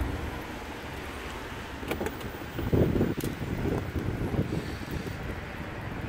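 Wind on the microphone over low outdoor background noise, with a few faint knocks about two and three seconds in.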